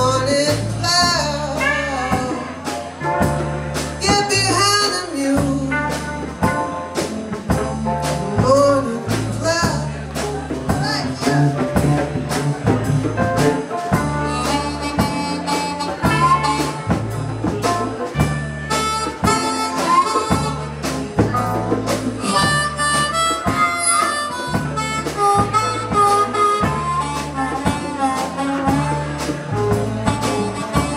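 Harmonica solo over a blues band's electric bass, drums and electric guitar, the bass repeating a steady pattern under the drum beat.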